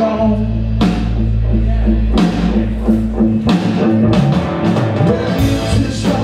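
A live rock band playing a song: electric guitars, bass guitar and drum kit, with a heavy low end and regular drum hits.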